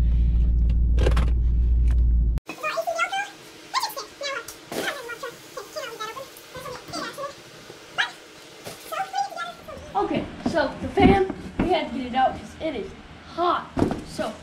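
Pontiac G8's engine idling steadily, heard from inside the cabin, cutting off abruptly about two seconds in. After that come scattered voice-like calls and a few sharp knocks.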